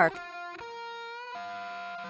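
Background music: held, sustained chords with no beat, changing twice.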